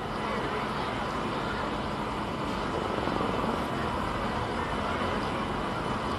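Ballpark ambience: a steady, even rush of background noise with no distinct events.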